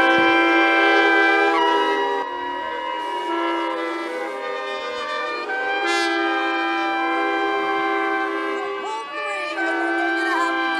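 Several shofars blown at once in long held notes, their tones overlapping at different pitches. Some notes change about two seconds in, and the sound dips briefly near nine seconds before the horns swell again.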